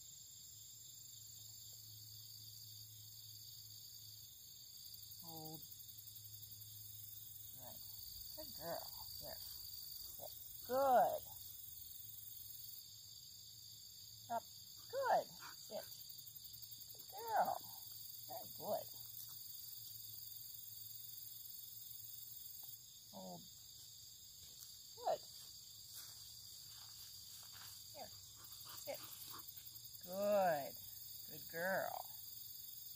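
A steady, high-pitched chorus of insects trilling, with short quiet spoken words every few seconds.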